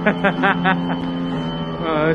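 Musical staircase playing a steady electronic note as a step breaks its laser beam, with a run of short laughing bursts over it in the first moment.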